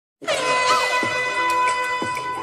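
An air-horn sound effect starting suddenly and held as one long steady blast over the start of a music track, with a few drum hits underneath.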